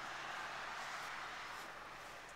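Faint steady hiss with no distinct events.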